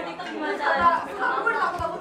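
Speech only: several women chatting and talking over one another.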